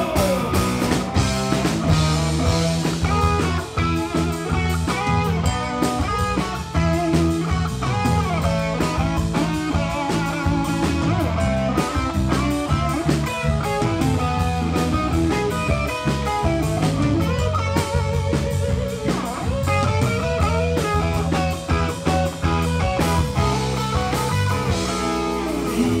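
Rock band playing live: electric guitars over a drum kit, running steadily through an instrumental passage of the song.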